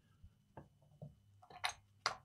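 Mostly quiet room with a few faint, scattered short clicks, the loudest shortly before the end.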